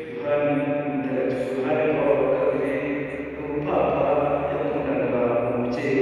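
Voices chanting a slow liturgical chant in long held notes, moving to a new pitch every second or two.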